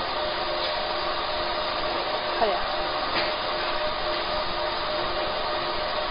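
Steady whirring hum of a fiber laser marking machine running as it marks colours onto stainless steel, even in level with a few constant tones in it.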